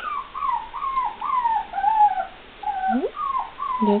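Young poodle puppy whimpering: a run of short, high, falling whines, about three a second, with a brief pause a little past halfway.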